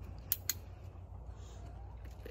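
A training clicker pressed and released: two sharp clicks about a fifth of a second apart, the marker that reinforces a fox for entering its shift box.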